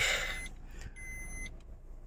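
Maruti Ertiga CNG's four-cylinder engine idling, heard inside the cabin as a low steady hum, with a faint thin high whine about a second in.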